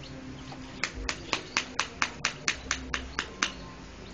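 A rapid, even series of about a dozen sharp clicks, roughly four a second, lasting about two and a half seconds.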